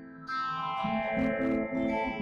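Two guitars, one a Telecaster-style electric, playing a duet. The sound dips briefly right at the start, then picks up again with a run of new notes over changing low notes.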